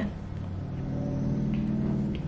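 A low, steady rumble with a faint hum that swells slightly, and two faint ticks in the second half.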